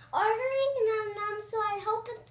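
A young girl's voice singing a short, high-pitched phrase with held notes.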